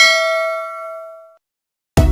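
A bell-like notification 'ding' sound effect, struck once and ringing out, fading away over about a second and a half. Music starts right at the end.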